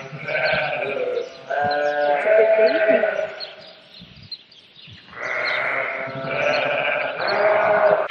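Sheep bleating in a lambing pen: a few drawn-out bleats, a lull of about a second and a half midway, then more bleating.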